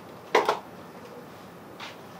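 A camera set down on a wooden stool: two quick, sharp knocks about a third of a second in.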